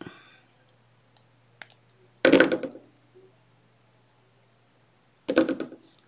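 Hand tools on a work table: a faint click, then two short, louder knocks about three seconds apart, as the jewelry pliers are handled and set down.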